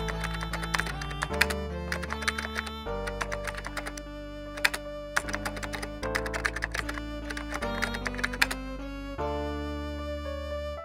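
Computer keyboard typing in quick runs of key clicks, in three stretches with short breaks about three and five seconds in, stopping about nine seconds in. Background music with held chords plays under it.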